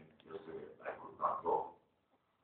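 A man's voice speaking through a microphone in short, indistinct phrases that stop near the end.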